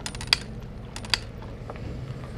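A run of sharp clicks and knocks from a plastic water jug and the metal lever of a water standpipe being handled before the water is turned on. The loudest clicks come about a third of a second in and just after one second, over a low rumble.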